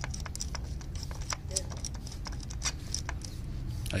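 Irregular light metallic clicks and ticks from a thin-walled spark plug socket and extension turning a new spark plug into its hole until it snugs up tight.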